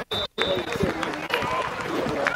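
Indistinct voices and chatter of players on an outdoor football field, with two brief dropouts in the audio near the start.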